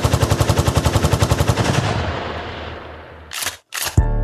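A rapid burst of automatic gunfire, about a dozen shots a second, that fades away over the next second or so, followed by two short sharp bursts of noise near the end.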